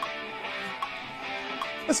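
Playback of the recorded song with its guitar track soloed: a guitar part playing steadily at moderate level, with faint ticks a little under a second apart.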